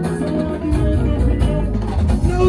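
Live band music: a plucked guitar line over bass and drums.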